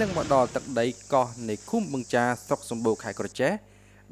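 A man's voice speaking over a steady high-pitched insect buzz. The buzz and the voice stop suddenly near the end, leaving a brief moment of near silence.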